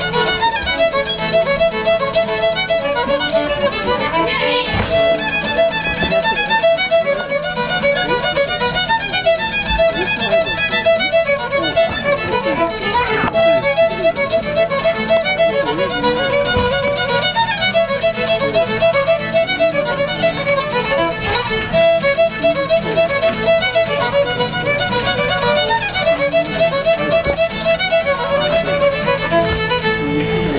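Two fiddles playing a tune together in a quick, steady stream of notes, backed by an acoustic guitar.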